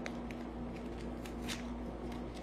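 Foil packet of an antacid tablet being handled and torn open by hand: a few faint, scattered crinkles and clicks.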